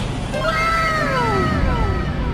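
A long meow-like cry that rises briefly and then falls in pitch, over a steady low rumble.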